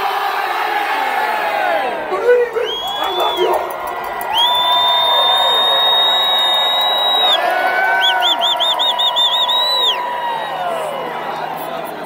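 A large crowd of fans cheering and yelling together, many voices held at once. Long shrill high tones cut through the roar around the middle, and a warbling one does so near the end.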